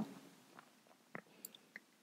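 Near silence between spoken phrases, broken by a few faint mouth clicks from the narrator close to the microphone; the clearest comes just past a second in.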